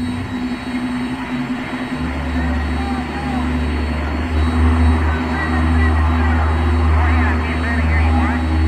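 A deep, steady low drone comes in about two seconds in and swells around the middle, under a constant hum. Faint, indistinct voices from a recorded phone call surface near the end.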